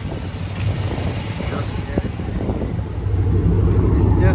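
Dodge Charger's HEMI V8 idling with a steady low rumble, growing louder near the end as the rear exhaust comes closer.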